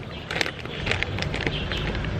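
Foil Doritos chip bag crinkling as tortilla chips are handled: a handful of short, sharp crackles, with a low rumble underneath that gets louder about a second in.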